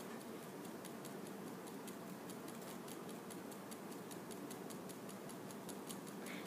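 Sling psychrometer being whirled on its handle, giving a faint, even ticking of about six clicks a second.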